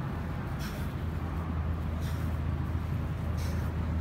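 A steady low droning hum, with a few faint brief sounds on top of it.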